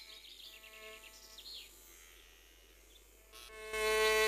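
Faint cartoon buzzing of bees' wings in flight, with a few quick high chirps in the first second and a half. A louder held musical chord comes in near the end.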